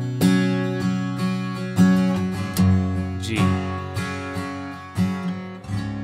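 Acoustic guitar in double drop D tuning, tuned down a half step, strummed through the C and G chords of the song's solo progression. Full chords ring, struck roughly once or twice a second, and the chord changes a little past halfway.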